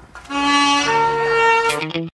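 A saxophone plays a held note, then steps down to a lower held note a little under a second in, with a short note just before the end.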